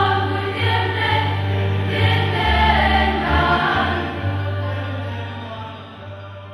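A large choir singing a hymn in held, sustained notes, the voices fading away over the last couple of seconds.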